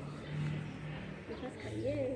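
Faint background voices over a low steady hum, in a lull between louder speech; no distinct sound event.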